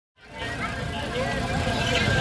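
Crowd chatter, many people talking at once over a steady low rumble, with music faintly under it. The sound fades in just after the start.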